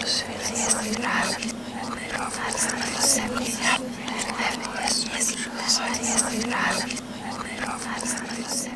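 A person whispering in short breathy phrases, over a steady low hum.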